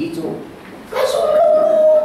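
A man preaching through a microphone: a short pause, then a long drawn-out vowel held on one pitch from about a second in.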